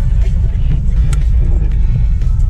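Loud, steady, low rumble of jet airliner cabin noise, with music playing over it.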